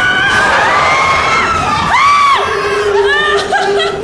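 Several riders screaming and whooping on a fast amusement ride: high, wavering cries that overlap, one held for about a second near the start and short arching shrieks around the middle. A steady low hum comes in about halfway through.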